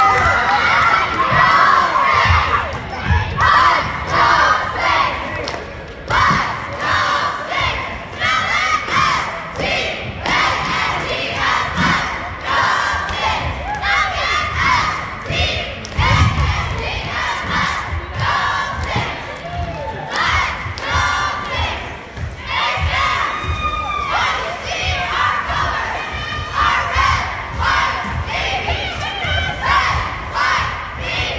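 A cheerleading squad shouting a chant in unison, in short rhythmic bursts, over crowd noise in a gymnasium.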